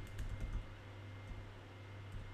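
Computer keyboard being typed on: a few soft keystrokes, mostly in the first half-second, as digits are entered.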